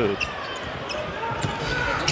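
Basketball arena sound during play: crowd murmur with a basketball bouncing on the hardwood court.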